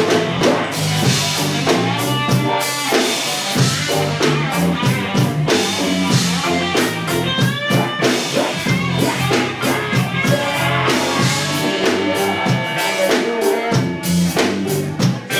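Live band playing loud amplified music: a drum kit keeping a steady beat under keyboard and guitar.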